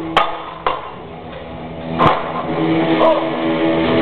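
Three sharp cracks, the loudest about two seconds in, then music with long held notes comes in and carries on.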